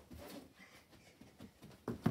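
Faint, soft patter of a child's feet running on carpet: a scatter of light thuds.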